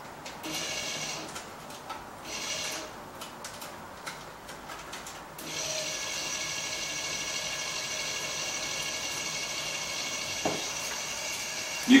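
Small electric underwater thruster motor running on a saltwater fuel cell battery, a high whine that cuts in and out several times in the first five seconds and then runs steadily.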